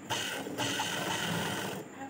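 Motor-driven sewing machine stitching strips of cloth: a short run, a brief break about half a second in, then a longer run that stops just before the end.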